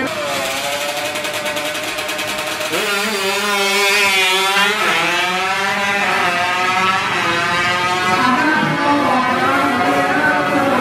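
Tuned Honda Wave drag scooter's engine at high revs during a quarter-mile run, its pitch jumping up about three seconds in and then rising and falling.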